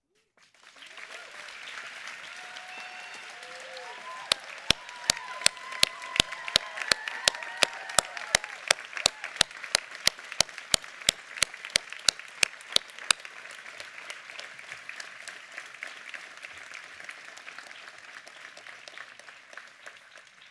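Crowd applauding, with a few cheering voices in the first few seconds. One pair of hands clapping close to the microphone stands out from about four seconds in until about thirteen seconds, steady at nearly three claps a second, and the applause fades toward the end.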